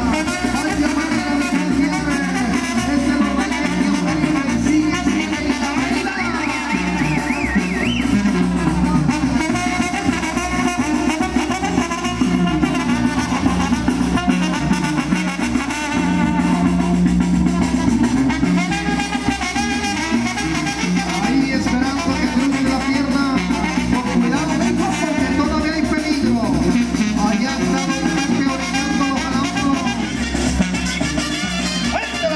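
Mexican banda music, brass and drums playing steadily without a break.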